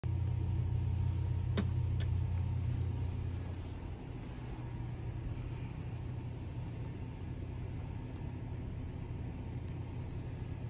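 A hall call button pressed with two sharp clicks about half a second apart, near two seconds in, over a steady low hum that eases slightly after about three seconds.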